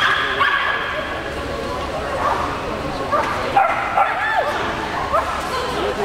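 Dogs yipping and barking over and over, in short calls that rise and fall in pitch, over the chatter of voices.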